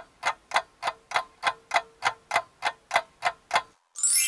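Clock-ticking sound effect: a steady tick-tock at about three and a half ticks a second that stops abruptly, used to mark time passing while the meal is prepared.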